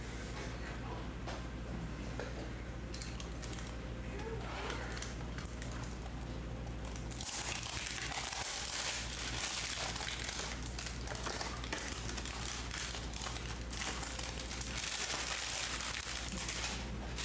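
Clear plastic shrink wrap crinkling as it is peeled off a cardboard trading-card hanger box. The crackling grows denser and louder about halfway through.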